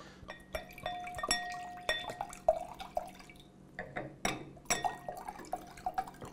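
Soft, uneven drip-like plinks, about two a second, each with a short ringing note.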